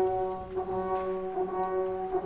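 Orchestral music: a soft passage of held brass and wind chords.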